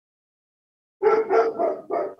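Four short vocal sounds in quick succession, starting about a second in after silence.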